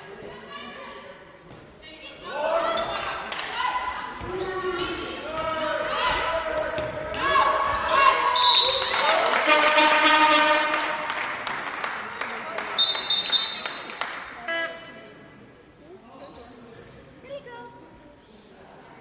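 Handball game in a reverberant sports hall: a ball bouncing on the court floor and many voices shouting from players and spectators, loudest in the middle, with a fast run of claps or knocks. Two short high whistle blasts, typical of a referee's whistle, come about halfway through and a few seconds later.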